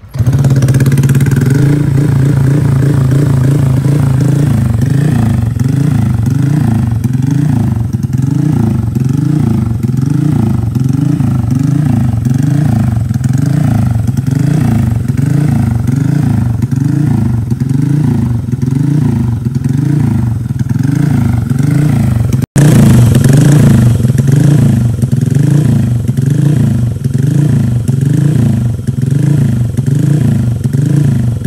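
A bored-up Honda Vario 125 LED scooter's single-cylinder engine starts and settles into a loud, steady idle through its aftermarket exhaust, on its second ECU tune setting. The idle note rises and falls regularly about once a second.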